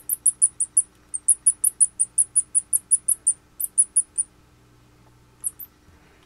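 A mouse squeaking: a rapid series of short, very high-pitched squeaks, about five a second, that stops about four seconds in, with two more squeaks near the end.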